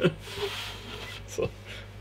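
A man laughing quietly and breathily, a chuckle exhaled mostly through the nose and mouth, trailing off after about a second.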